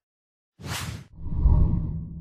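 Animated logo intro sound effect: after a brief silence, a short whoosh about half a second in, followed by a deep low boom that swells and then fades away.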